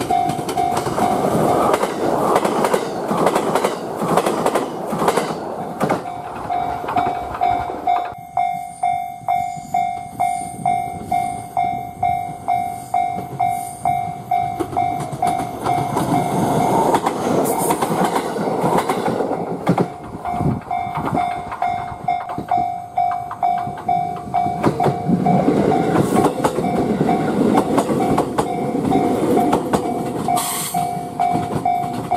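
Electric trains running over a Y-shaped turnout on a single-track line: a limited express passes at speed in the first seconds, the sound cuts off abruptly about eight seconds in, then a JR West 223 series local train's wheels run over the switch rails a few seconds after the middle and another train approaches near the end. A steady ringing tone pulses about once or twice a second through most of it.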